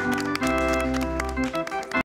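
Music of sustained chords over a light, even beat. The chords change about half a second in, and the music cuts off suddenly at the very end.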